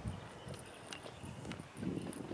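Footsteps on a concrete lane, about two steps a second, over a low rumble.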